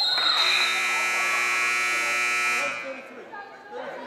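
Gym shot-clock buzzer sounding one steady electronic tone for about two and a half seconds as the shot clock runs out. A short, high referee's whistle blows right at the start.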